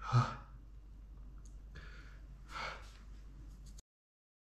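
A man's short voiced "huh" breath, followed by two breathy sighs about two seconds later, with the sound cutting off suddenly near the end.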